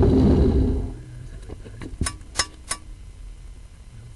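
A sewer inspection camera and its push cable in a drain pipe: a loud rumbling scrape for about the first second, then three sharp clicks a little over two seconds in.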